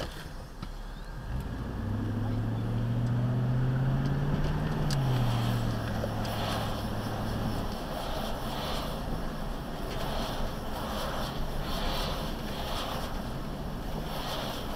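A car's engine heard from inside the cabin as the car pulls away and accelerates, rising in pitch. About five seconds in the pitch drops suddenly at a gear change, and the engine then runs steadily at a lower pitch as the car cruises.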